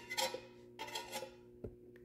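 Stick-welding electrode scratched against steel in a few short, metallic scrapes: attempts to strike an arc that does not catch.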